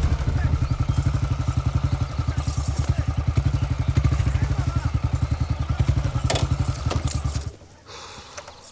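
Motorcycle engine running with a rapid, even exhaust beat as the bike rides along, then cutting out about seven and a half seconds in as it stops.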